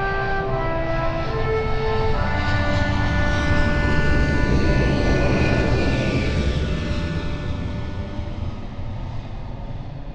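Aircraft passing overhead: a low rumble and rushing hiss that swell to a peak about five seconds in and then fade away. Closing music tones end in the first couple of seconds.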